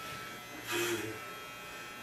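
Electric hair clippers running with a steady buzz while cutting hair at the side of a man's head.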